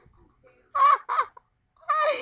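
A girl's voice making two short, high-pitched, wordless vocal noises in a silly, clucking manner, about a second in.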